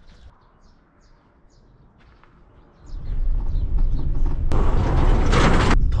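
Birds chirping faintly over a quiet rural background. About three seconds in, a loud steady low rumble of a camper van on the move takes over, heard from inside the cab, with a rushing hiss over it for about a second near the end.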